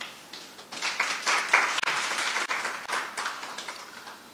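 Audience applauding: a short round of clapping that builds about a second in and fades away near the end.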